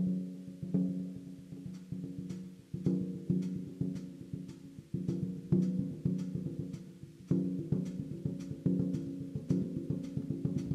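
Music: a percussion passage of resonant, pitched drum strikes, each ringing and fading, struck irregularly about every half second to a second, with light clicking percussion between them.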